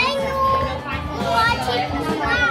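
Young children's voices chattering and calling out as they play, over background music.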